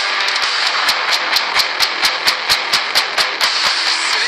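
Heavy metal band music: heavily distorted electric guitar riffing over a driving drum beat with sharp hits about five times a second, with no vocals.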